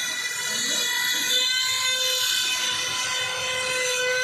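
Mobile crane running while it holds a heavy load, giving a steady high whine with evenly spaced overtones.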